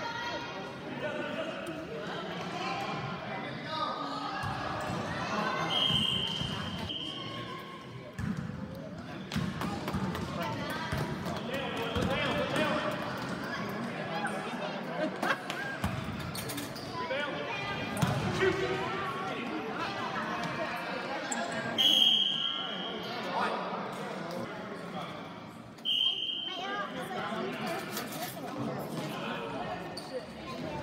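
Basketball dribbling and bouncing on a gym floor among spectators' voices and shouts, with a referee's whistle blown in three short blasts: a few seconds in, and twice more in the last third.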